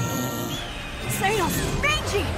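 Cartoon soundtrack: background music with brief high-pitched character voices about a second in.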